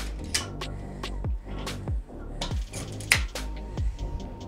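Metal weight plates clinking and knocking as they are loaded onto dumbbell handles, in irregular sharp clicks with one louder clank about three seconds in, over background music with deep bass notes.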